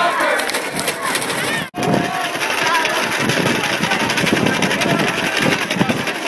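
Crowd noise at a football game: many voices talking and shouting at once in a dense, steady din. The sound cuts out for an instant about two seconds in.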